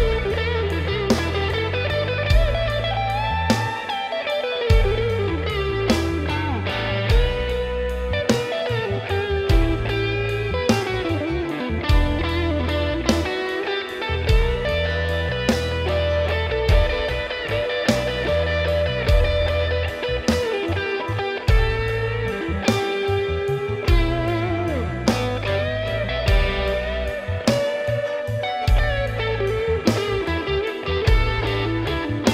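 Bengali pop-rock band music: a lead electric guitar plays a bending melody over bass guitar and a steady drum beat.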